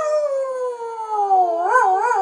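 Dachshund howling: one long howl that slides steadily down in pitch, then breaks into short wavering swoops near the end.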